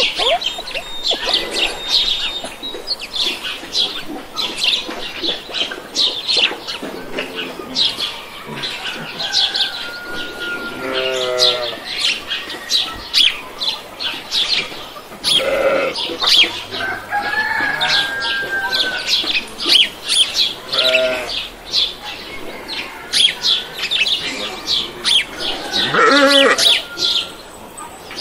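Farmyard ambience: small birds chirping almost without pause, with several louder calls from farm animals, such as poultry, breaking in every few seconds.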